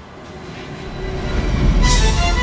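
Dramatic soundtrack swell: a deep rumble building steadily in loudness, ending in a sharp hit near the end that opens into sustained music chords.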